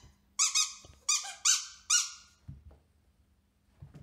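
A squeaky dog toy squeaking about five times in quick succession in the first two seconds, each squeak high-pitched with a short falling tail.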